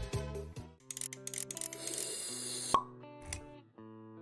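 Background music fades out, then the sound design of an animated logo intro: held synth notes under a hiss that ends in a sharp pop about three quarters of the way in, followed by a small soft knock.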